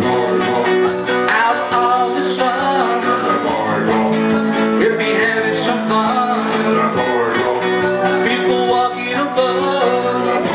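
Live acoustic guitars strummed over a bass guitar line, an instrumental passage with no lead vocal.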